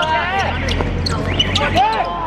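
Futsal players shouting and calling out short cries during play, with sharp knocks of the ball being kicked on the hard court.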